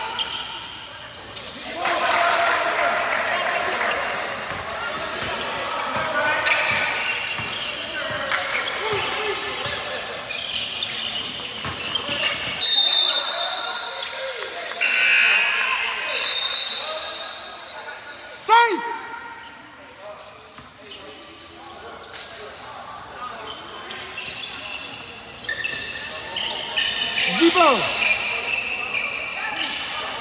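Gym sound from a basketball game: the ball bouncing on the hardwood and voices of players and spectators echoing in the hall. Two short, steady, high whistle blasts come around the middle, as play stops for free throws, and a couple of short squeaks come later.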